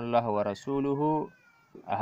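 A man reading Arabic text aloud with long, drawn-out syllables, pausing briefly before going on.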